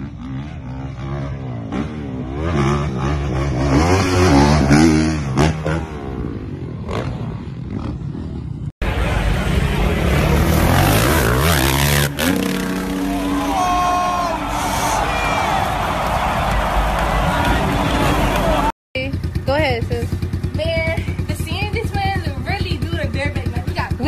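Dirt bike engines revving in three short clips cut together: first an engine rising and falling in pitch over and over, then a loud dense din, then a small engine running with a fast even pulse under voices. The clips change abruptly about nine and nineteen seconds in.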